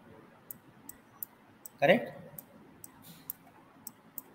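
Scattered light, sharp clicks, about seven over four seconds, as writing is put onto a digital whiteboard with a pen input. One short word is spoken about two seconds in.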